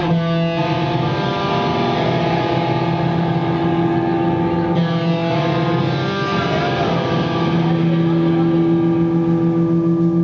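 Electric guitars of a live band holding sustained, ringing chords over a steady low drone. The chord shifts a few times, and it swells slightly louder near the end.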